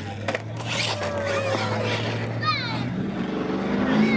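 Radio-controlled monster truck motors whining in quick rising and falling revs, with a couple of sharp knocks near the start.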